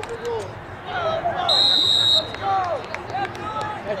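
A referee's whistle blown once: a single steady, shrill blast lasting under a second, about one and a half seconds in, over spectators shouting.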